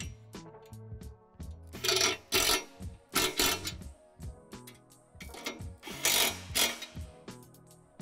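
A ratchet wrench clicking in short bursts, about three spells, as it tightens a bolt on the bench's frame, over background music.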